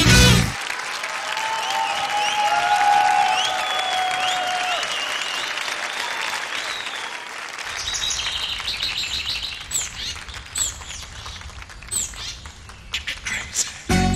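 Studio audience applauding and cheering, with shrill whistles, after the music cuts off. The applause thins out in the second half, where a few sharp clicks and short high chirps come through.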